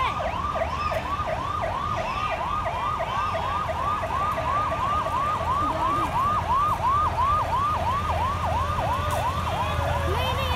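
Siren on a convoy escort vehicle sounding a fast yelp, with quick rise-and-fall sweeps about three and a half times a second. The low rumble of the passing army trucks' engines runs underneath.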